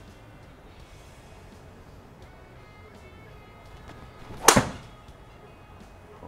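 Golf driver striking a teed ball: one sharp crack about four and a half seconds in, run together with the thud of the ball hitting the simulator screen.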